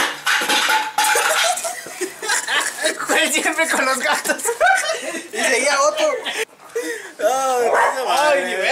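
A group of young men suddenly bursting into loud laughter together, with shrieks and shouts, going on in waves with a brief lull about six and a half seconds in.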